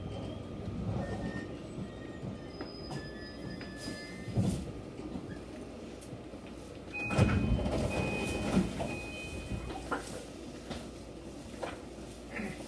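Inside a JR Kyushu Kashii Line train as it slows to a stop at a station, with a low rumble and faint thin squealing tones as it brakes. About seven seconds in, the doors slide open with a louder rush and a broken high tone, followed by a few clicks.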